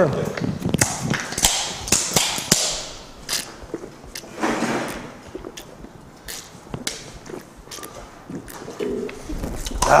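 Several aluminium beer cans being shotgunned at once: sharp clicks and knocks of the cans with stretches of drinking noise, busiest in the first few seconds and thinning out after.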